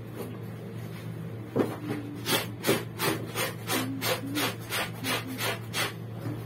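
Wet laundry being scrubbed by hand in a plastic basin: a run of quick scrubbing strokes, a little under three a second, starting about a second and a half in.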